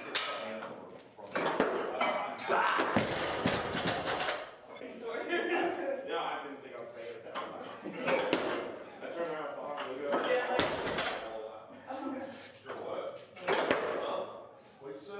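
Indistinct voices in the background, with a few sharp knocks and clanks from the loaded steel barbell and its plates as the lift is made.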